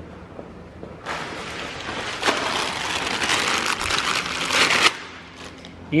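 Plastic packaging crinkling and rustling as a new gearbox mount is unwrapped by hand. The rustling starts about a second in, grows busier, and stops about a second before the end.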